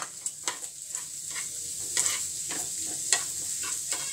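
Scrambled egg mixture sizzling in a hot pan while a spatula stirs it, scraping and tapping against the pan at irregular moments over a steady frying hiss.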